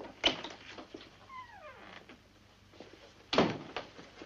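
A door opening and shutting: a sharp click about a quarter second in, a short falling squeak, then a heavier thump a little past three seconds in as the door closes.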